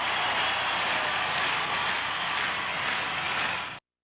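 A steady rushing noise, like wind or static, with no tone or beat, that cuts off suddenly near the end.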